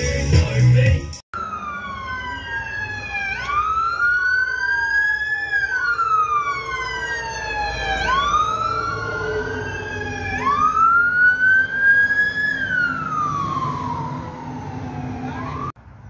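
Fire engine siren wailing, its pitch rising and falling in slow, overlapping sweeps every few seconds. It follows about a second of intro music, which cuts off abruptly.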